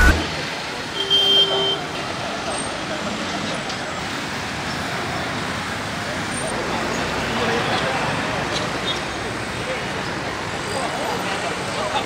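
Steady roadside traffic noise mixed with indistinct voices of a crowd. About a second in, a short steady beep like a vehicle horn sounds.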